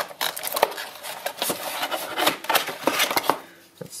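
Cardboard box insert being handled as a plastic power adapter is worked out of its slot: a run of scraping, rustling and small knocks that dies away near the end.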